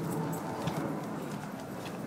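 Footsteps on a concrete walkway: light, irregular clicks and scuffs over a steady low background hum.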